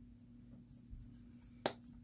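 A single sharp click about three-quarters of the way through, from makeup being handled on the table, with a soft low thump about a second in, over a faint steady hum.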